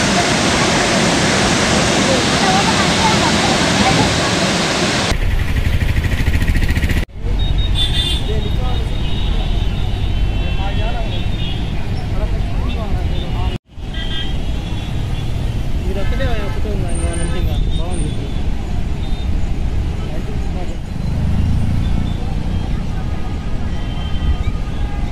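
Loud rushing roar of water pouring through the open spillway gates of the Srisailam dam for about five seconds, then an abrupt switch to the ambience of a traffic jam: vehicles running, occasional horns and people talking. The sound drops out for an instant twice.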